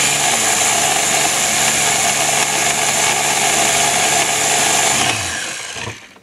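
Ninja pulse blender's motor running steadily at full speed, blending fruit and leafy greens with water into a smoothie. About five seconds in the motor is released and spins down, its pitch falling, and it stops just before the end.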